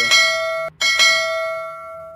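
A bell-like ding sound effect of the kind that goes with a subscribe-button bell animation. It rings twice: the first ring is cut short after under a second, and the second rings out and fades over about a second and a half.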